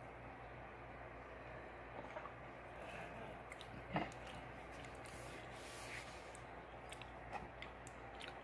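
Faint room hum with a few small handling ticks; about four seconds in, a drinking glass set down on a plastic tray gives one soft knock.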